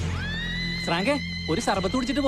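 Film soundtrack: a high musical note rises and is then held, and from about a second in a voice sounds over it with pitch that swings up and down.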